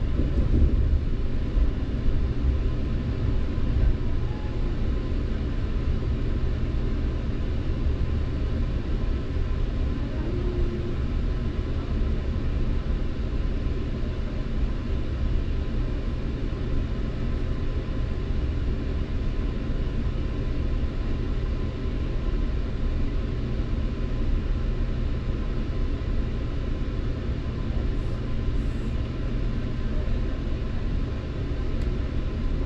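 Steady low rumble inside a Metrolink commuter train coach as the train rolls slowly into a station and comes nearly to a stop.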